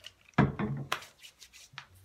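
Handling sounds: a single thump about half a second in, then a few light clicks and rubbing sounds as hands work coconut hair product into hair.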